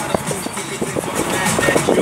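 Road and engine noise inside a moving car, with music playing over it.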